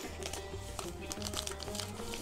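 Soft background music with light crinkling of a paper sachet of vanilla sugar as it is torn open and emptied into a saucepan.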